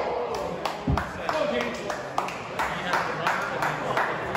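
Scattered, irregular hand claps from a small audience over low background chatter, with one low thump about a second in.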